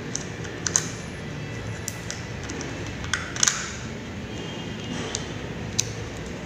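Scattered sharp clicks and taps of a metal screwdriver and small parts against a stand fan's motor and swing-gear housing while its screws are worked, over steady background noise.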